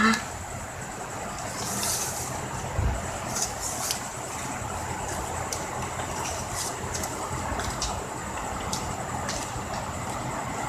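Satin ribbon rustling and crinkling as hands fold and weave it, in scattered short crackles, over a steady background noise.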